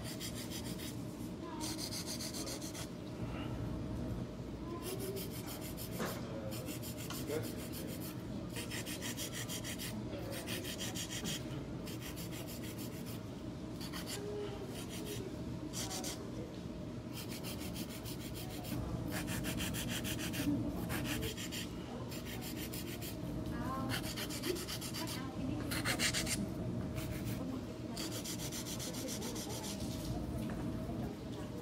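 Hand nail file rasping back and forth across powder-coated coffin-shaped nails in repeated short bursts of quick strokes, roughing in their shape. A low steady hum runs underneath.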